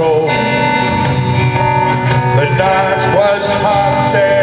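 A live band playing a blues-rock song, with guitar, keyboard and drums, recorded from the audience.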